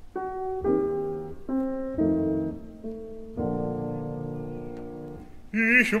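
Piano accompaniment playing an interlude between sung lines: several short separate chords, then a longer held chord. A bass-baritone voice comes in singing near the end.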